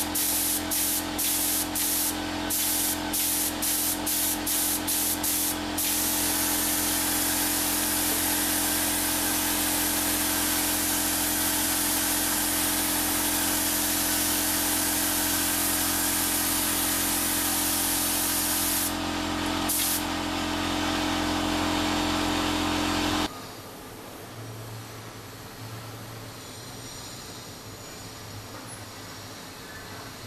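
Air spray gun for spray-on chrome hissing as it sprays. It is triggered in short bursts about two a second at first, then held in one long continuous spray over a steady hum, and it cuts off suddenly about 23 seconds in, leaving a quieter background.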